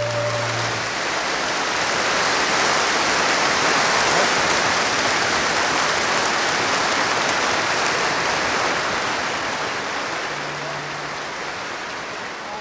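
The traditional jazz band's final held chord dies away about a second in, then a concert audience applauds, the clapping slowly thinning out toward the end.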